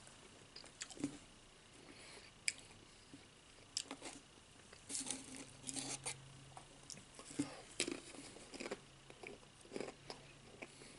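Faint, irregular crunching of Pringles Wavy potato crisps being chewed, in short bursts with small clicks between them.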